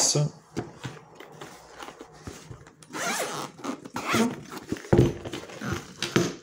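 Zipper of a hard-shell headphone carrying case being pulled open, with knocks and rustles as the case is handled; a sharper knock about five seconds in.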